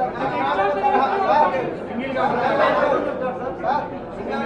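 Several people talking over one another: indistinct chatter of overlapping voices in a room.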